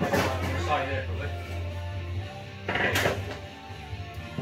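Background music with a steady bass line and a voice over it, louder twice: at the start and about three seconds in.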